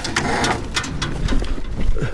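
Close rubbing and knocking as a lion's fur brushes and presses against the camera, with a brief low pitched sound about a second in.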